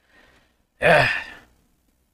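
A man's faint breath in, then one loud, breathy sighing "eh-i" of exasperation, falling in pitch.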